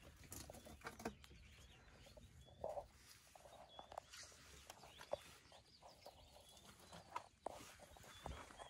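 Faint open-air quiet: a bird's short, high chirp repeating every second or so, with scattered soft rustles and clicks.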